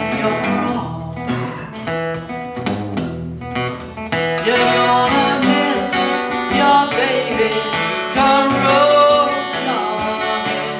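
An acoustic guitar being strummed with a woman's voice singing over it, a live two-piece acoustic performance.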